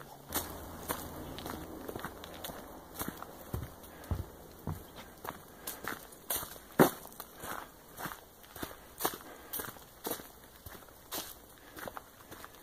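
Footsteps of a person walking along a dirt hiking trail, irregular steps about one or two a second, one louder step about seven seconds in.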